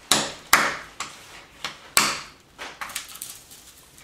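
Hammerstone striking a flint core resting on a stone anvil in bipolar knapping: three sharp stone-on-stone cracks within the first two seconds, with a few lighter knocks after. One blow splits a flake off the bottom of the core where it sits on the anvil.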